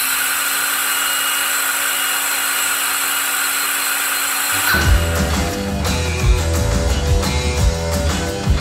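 A power tool running at one steady pitch, cutting off about five seconds in as rock music with guitar and drums begins.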